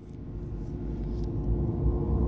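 Sound-effect riser for an animated logo intro: a low rumbling whoosh that swells steadily louder.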